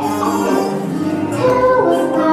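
A group of children singing a number from a stage musical, in held, sustained notes, with musical accompaniment underneath.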